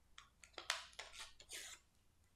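A printed paper cut-out being torn in half by hand: a quick series of ripping strokes over about a second and a half, loudest about two-thirds of a second in and again near the end.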